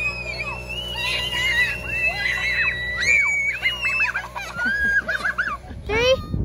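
Several children screaming and squealing in high, overlapping voices while sledding down a packed snow run, with a steady low hum underneath.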